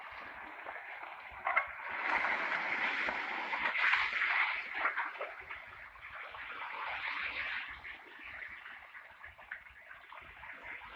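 A loaded tipper lorry falling off a collapsing embankment into a flooded stream: a sharp knock about a second and a half in, then a loud rush of splashing water for about three seconds. It eases to the steady rush of floodwater churning around the overturned truck.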